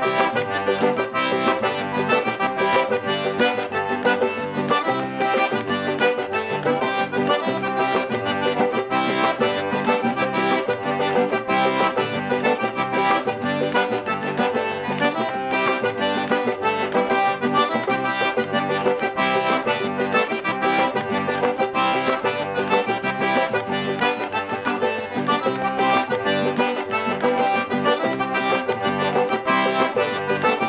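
Cajun two-step dance tune led by accordion, played at a steady, even beat.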